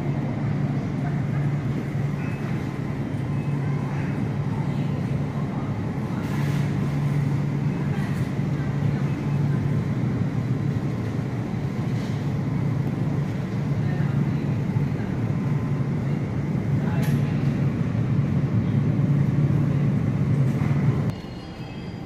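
Steady low hum of refrigerated produce display cases, running evenly and cutting off suddenly near the end.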